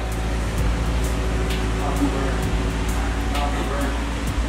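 Steady low hum of background music, with a few faint, distant voices over it.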